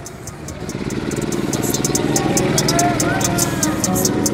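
A go-kart's small engine running, growing louder from about half a second in as it comes nearer, over background music with a quick hi-hat beat.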